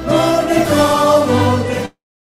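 A mixed choir of men's and women's voices singing in held notes. The sound cuts out abruptly near the end.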